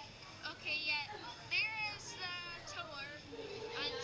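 Several short, high-pitched voices calling out with no clear words, about a second apart. A steady humming tone comes in near the end.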